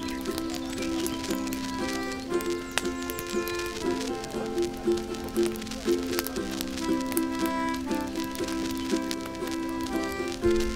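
Concertina playing blues: held chords that change every second or two, with scattered crackling clicks over the music.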